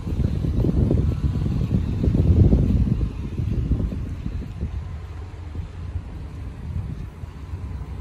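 Low, uneven outdoor rumble with no clear engine note. It is loudest in the first three seconds, then settles to a steadier, lower level.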